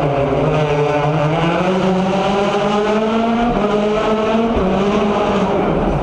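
Citroën DS3 WRC rally car's turbocharged four-cylinder engine accelerating hard out of a tight corner. It is loud, and its pitch climbs, then drops back at upshifts about three and a half and four and a half seconds in.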